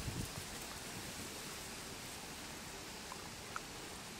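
Steady faint hiss of outdoor background noise, with a few low bumps at the very start and two faint ticks late on.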